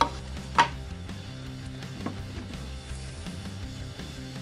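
Background guitar music, with a sharp knock about half a second in as a steel adjustable wrench is set down on a wooden board, and a fainter knock about two seconds in.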